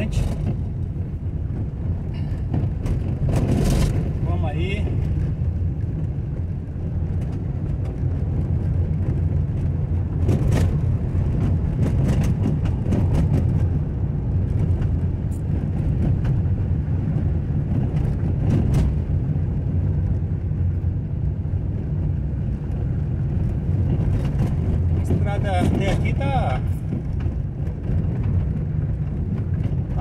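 Car driving on an unpaved dirt road, heard from inside the cabin: a steady low rumble of engine and tyres, with scattered knocks and rattles from bumps in the road.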